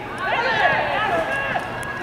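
Several high-pitched voices shouting and calling over one another in short rising-and-falling cries, with no clear words.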